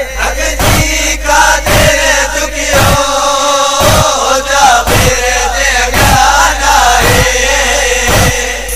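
Noha music interlude: a chorus of voices chanting over a heavy beat struck about once a second.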